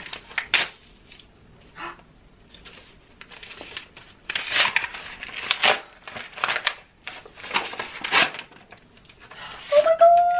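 Wrapping paper being torn open and crinkled by hand as a thin, flat gift is unwrapped: a run of irregular rustles and rips, busiest in the second half.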